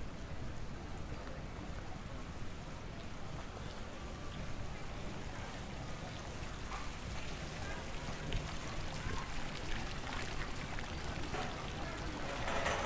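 Fountain water splashing and trickling steadily, under a murmur of indistinct voices.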